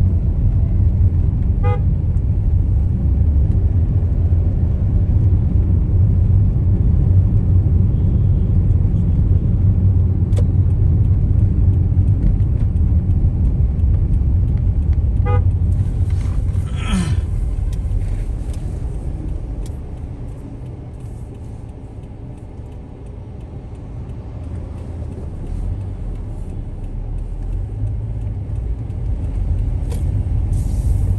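Car driving in town traffic, heard from inside the cabin: a steady low road and engine rumble, with short horn toots about 2 s and 15 s in and a louder horn blast about 17 s in. The rumble eases off for a few seconds after about 20 s, as if the car slows, then builds again.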